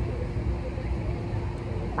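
Wind buffeting the microphone in an irregular low rumble, with a steady hum underneath.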